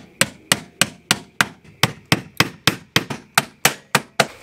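A hammer driving roofing nails through metal Z-bar flashing into the wall: a steady run of sharp blows, about three a second.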